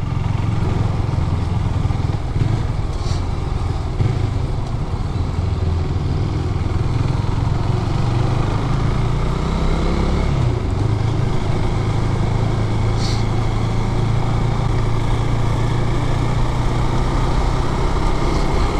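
The single-cylinder engine of a 2018 Husqvarna Svartpilen 401 runs steadily under way. Its pitch rises and then falls briefly about ten seconds in.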